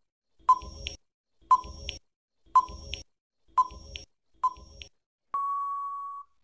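Quiz countdown-timer sound effect: five short beeps about a second apart, then one long steady beep signalling that time is up.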